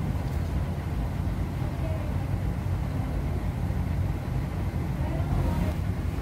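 Steady low rumble of background room noise, with faint voices now and then.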